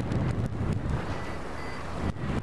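Airflow rushing over a glider-mounted action camera's microphone during a hang glider flight: a steady low rush of wind noise.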